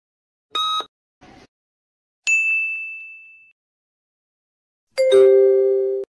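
Electronic sound effects: the last of a series of short countdown beeps, a single bright ding that rings and fades over about a second, then near the end a loud two-note falling chime, cut off abruptly, as the quiz answer is revealed.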